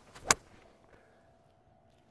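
Callaway AI Smoke Paradigm 7-hybrid striking a golf ball out of a lie sitting down in the rough: one sharp, short impact about a third of a second in.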